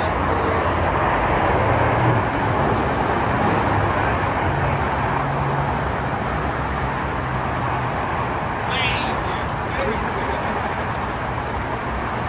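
Steady freeway traffic noise, a continuous wash of passing cars and trucks with a low hum underneath.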